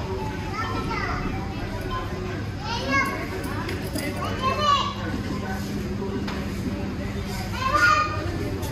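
Children's voices calling out in short high-pitched bursts over a steady background of indoor chatter, with the loudest calls about three seconds in, around four and a half seconds, and near the end.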